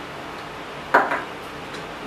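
A wooden spatula stirring chopped onion in a stainless steel pan, with a sharp clatter of spatula against the pan about a second in and a smaller knock just after.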